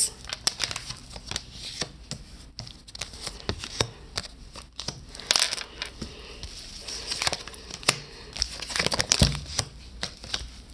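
Tarot cards being handled and laid out: irregular rustling with sharp little clicks and taps, busiest about halfway through and again near the end.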